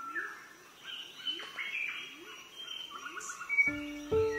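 Several birds chirping and calling, with a low rising call repeated several times. Music starts near the end.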